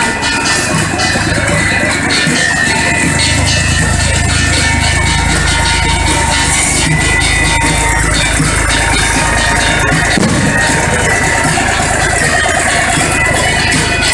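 Asturian gaita (bagpipe) music, its steady drone and melody sounding throughout, with the engine of a small tractor running close by under it; the engine sound drops away about ten seconds in.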